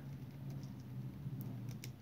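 Faint keystrokes on a computer keyboard as a word is typed, a few scattered clicks over a steady low hum.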